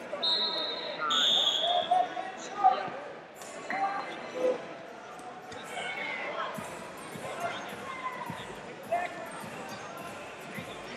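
End-of-period signal: a high, steady tone lasting under a second, followed straight after by a second, slightly lower tone of about a second, marking the end of the first period of a wrestling bout.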